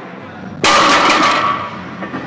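Loaded barbell with bumper plates coming down hard on the gym floor at the end of a deadlift: one sudden loud crash about half a second in, with the plates rattling and ringing away over about a second.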